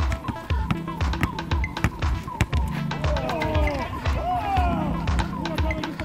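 Background music with a steady, regular beat; a voice slides up and down over it in the second half.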